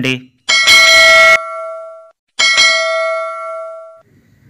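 A bell struck twice, about two seconds apart. Each ring holds several steady tones that fade over a second or so, and the first strike opens with a loud hiss.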